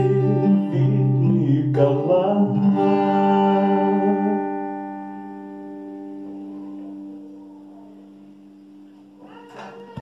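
Acoustic guitar strummed, then the final chord left to ring and fade away slowly, closing the song. A short rustle near the end.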